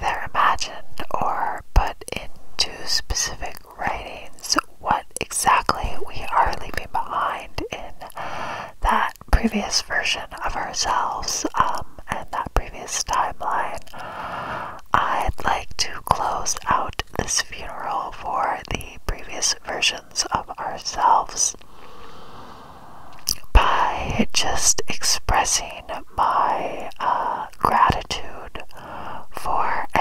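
Inaudible ASMR whispering close to the microphone, spoken into a small open box cupped against the mouth, with many sharp mouth clicks between the syllables. The whispering pauses briefly about two-thirds of the way through.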